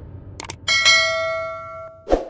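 A quick double click, then a bright bell chime that rings out and fades over about a second: the notification-bell sound effect of a subscribe-button animation.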